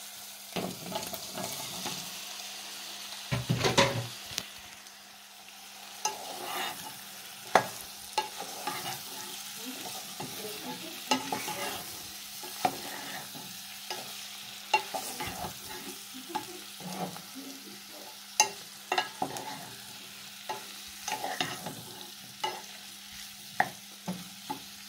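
Wooden spoon stirring and scraping in a non-stick pot of onions frying in oil, with a light sizzle and frequent sharp knocks of the spoon against the pot. A louder clatter about four seconds in fits diced boiled potatoes being tipped into the pan, and they are then stirred into the onions. A faint steady hum runs underneath.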